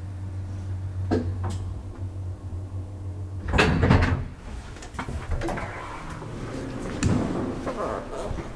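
KONE hydraulic elevator: a steady low hum from the drive stops suddenly about three and a half seconds in. A loud clunk and rattle follows at once as the manual landing door is unlatched and swung open, then a few lighter door clicks.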